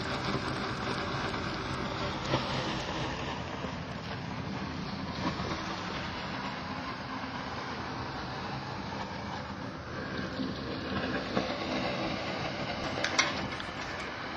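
Hot water and steam jetting from the downhole heater's outlet pipe: a steady rushing hiss with a faint low hum underneath.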